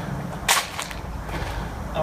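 A tennis ball being played with a golf club on a tarmac urban-golf hole toward a metal drain grate: one sharp crack about half a second in, followed by a couple of fainter knocks.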